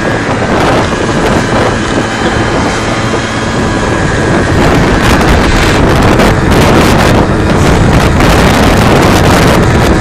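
Wind rushing over the microphone of a phone carried on a moving moped, with the moped's engine running beneath it. The noise grows a little louder about halfway through.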